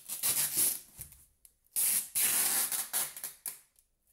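A cardboard box shuffled and turned on a wooden table, then packing tape pulled off its roll in one long, noisy pull of nearly two seconds.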